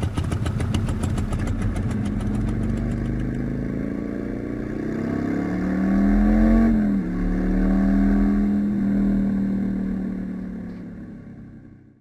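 Harley-Davidson touring motorcycle's V-twin engine under way, heard from the rider's seat. Its pitch climbs, drops sharply about seven seconds in, then holds steady before fading out near the end.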